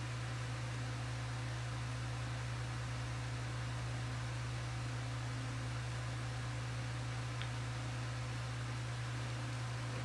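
An electric pedestal fan running: a steady low hum under an even hiss, unchanging throughout.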